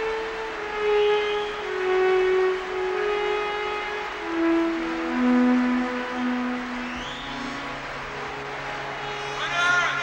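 Slow music melody of long held notes that step from one pitch to the next. A low steady note comes in about seven seconds in, and a pitched voice enters near the end.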